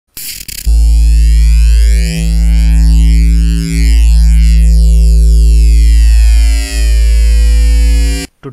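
Loud synthesized intro music for a logo reveal: after a short burst at the very start, a deep bass drone with a sustained buzzy chord and sweeping high tones sets in about two-thirds of a second in, dipping briefly three times.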